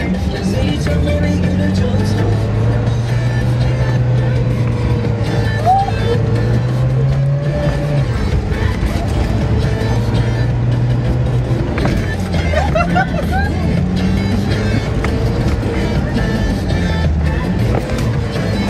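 Car engine running as the vehicle drives over desert sand dunes, its pitch rising steadily from about four seconds in and dropping back at about eight seconds, with music playing over it.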